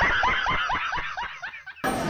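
A man laughing hard, a fast run of 'ha's that starts loud and tails off. The laughter is cut off just before the end, when room chatter comes back in.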